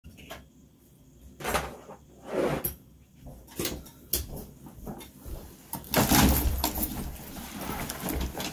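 Scattered knocks, clicks and rustles of a person moving about a small room, becoming louder and more continuous about six seconds in as they come up close.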